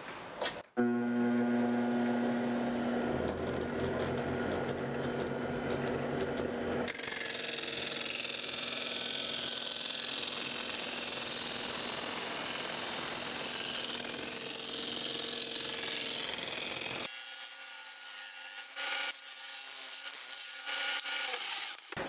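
A shop-made lathe's DC motor starts up and spins a sanding disc with a steady hum. About seven seconds in, a strip of wood is pressed against the disc and a steady sanding hiss takes over. About seventeen seconds in, the motor's hum drops away, leaving a few light knocks.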